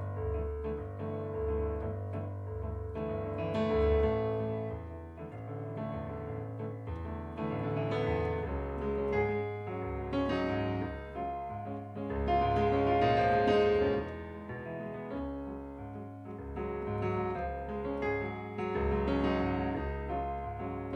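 Solo piano music played on a digital stage piano: chords and melody over sustained bass notes, swelling loudest about twelve to fourteen seconds in.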